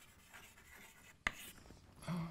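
Chalk writing on a blackboard: faint scratching strokes, with one sharp tap about a second and a quarter in.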